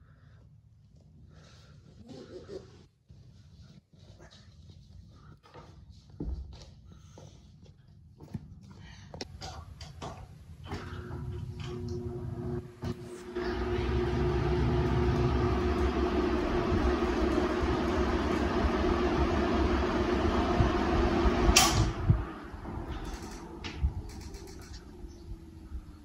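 A row of electric table fans switched on with a series of switch clicks. Their motors hum and the blades blow a steady rush of air together. After a sharp click about two-thirds of the way in they are switched off, and the sound drops, with one motor's hum sinking in pitch as it spins down.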